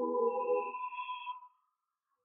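Electronic ringing sound effect: several steady tones, some low and some high, fading out within about a second and a half.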